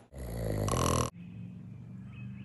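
A baby's voice, a low, pitched sound that grows louder for about a second and then cuts off. A quieter steady background follows.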